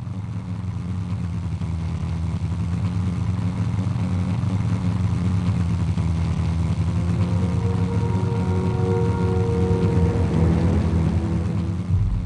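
Steady drone of a propeller aircraft's piston engine, growing louder, with music joining in with sustained notes in the second half.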